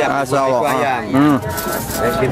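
Speech: people talking in conversation, with no other sound standing out.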